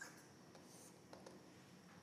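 Near silence: room tone with a few faint ticks of a stylus on a writing tablet.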